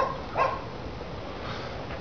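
A dog barking twice, two short high-pitched barks close together near the start.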